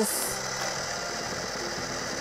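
Battery-powered toy blender running steadily, its small motor whirring as it spins the toy fruit pieces in the jar, with a short hiss at the very start.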